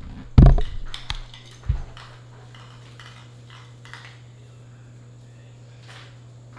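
Handling knocks as a camera is set down on a stone countertop: a loud thump about half a second in, a few clicks, and a second duller thump a little later. After that only a steady low hum of room tone.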